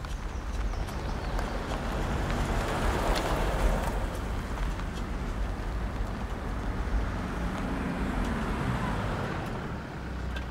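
Land Rover Discovery driving slowly along a sandy forest track: a steady engine rumble under the noise of the tyres rolling on sand and dirt.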